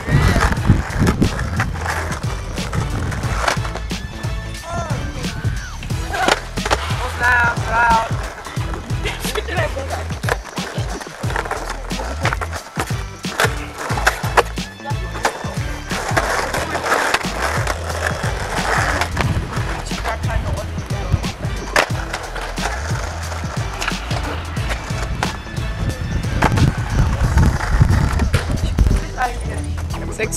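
Skateboard rolling on an asphalt street, with many sharp clacks of the wooden board and wheels hitting the road as flatland tricks are tried. Young voices come in now and then.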